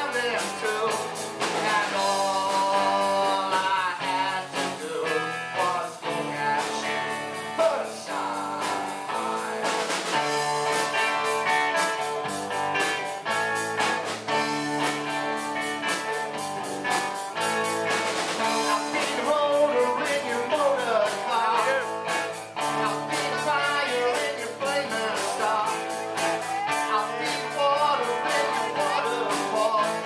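A live rock band playing: electric guitars over drums with a steady beat, and a sung vocal.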